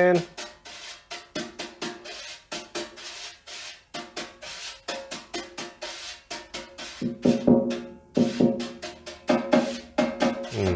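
Snare drum solo played with a brush and a soft-headed mallet: quick strokes at uneven spacing, each with a short ringing tone from the drumhead. The playing grows louder about seven seconds in.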